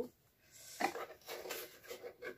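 Faint rubbing and rustling of a small cardboard gift box being opened by hand, the lid and flaps scraping as it is pulled open.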